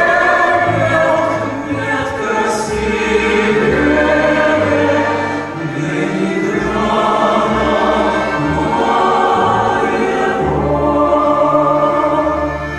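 Mixed choir of women's and men's voices singing a song in long held chords.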